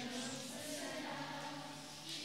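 A group of voices singing a hymn together in long, held notes, like a choir.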